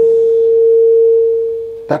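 A loud single steady tone at one pitch, pure and without overtones, held through the pause and fading away just before the voice returns near the end.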